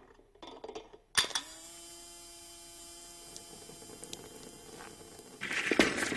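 A sharp click about a second in, then a small electric motor, a car windscreen-wiper motor run from a car battery, hums at a steady pitch for about four seconds. Near the end, loud irregular clattering and tapping starts as the parts move against one another.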